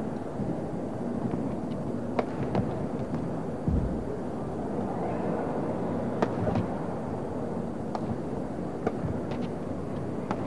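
Badminton rally: a string of sharp cracks from rackets striking a feather shuttlecock, irregularly spaced and often in close pairs, over the steady murmur of an indoor arena. A dull low thump comes about four seconds in.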